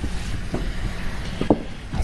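Low, steady room rumble from a playing hall, with two soft, short knocks on the table about half a second and a second and a half in.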